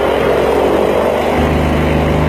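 Swamp buggy's engine running steadily under way, with a low drone that grows stronger about one and a half seconds in.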